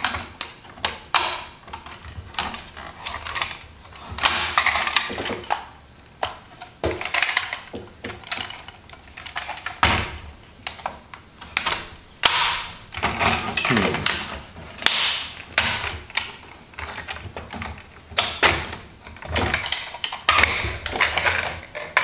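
Hasbro Rescue Bots Heatwave plastic toy being folded by hand from robot into truck: a long run of irregular clicks, snaps and knocks as its plastic joints and panels are moved and pressed into place.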